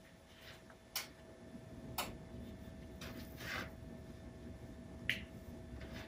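A few light clicks about a second apart: a knife tip tapping on a metal baking sheet as crosses are scored into rolled-out bread dough, with soft handling of the dough.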